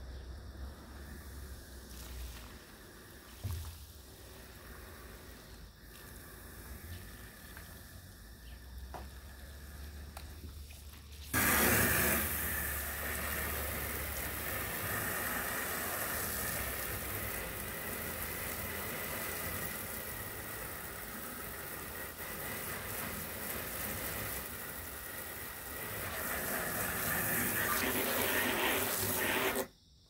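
Garden hose spraying water onto an inflatable stand-up paddle board. It starts suddenly about eleven seconds in, runs steadily, and cuts off abruptly near the end.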